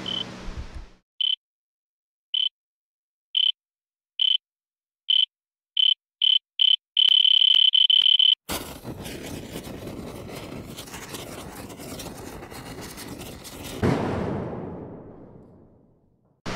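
Electronic beeps at one high pitch, coming faster and faster until they run into one long tone. Then a loud hiss of noise cuts in suddenly and fades away, swelling once more near the end before dying out.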